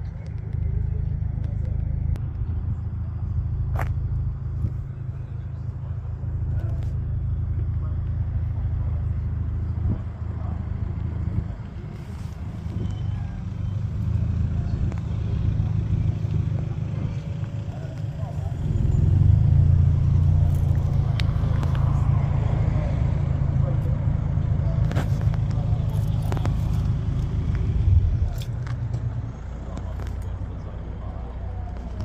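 Indistinct background voices over a steady low rumble, which grows louder for a stretch in the second half.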